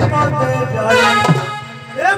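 Live Odia folk-performance music over a PA: a voice with held melodic accompaniment, the sound thinning out in the last half second.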